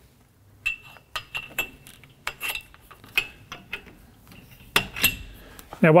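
A spreader-bar corner piece being tapped into the arm of a folding frame clothesline: a run of light metallic taps with a faint ring, and a heavier knock near the end.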